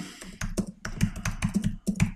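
Typing on a computer keyboard: a quick, uneven run of keystrokes.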